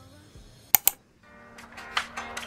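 Two sharp clicks less than a second in, then acoustic guitar background music fading in after a brief gap.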